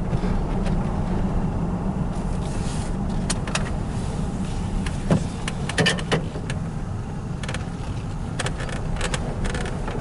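Steady engine and road noise heard from inside a car driving slowly, with a few short clicks and rattles.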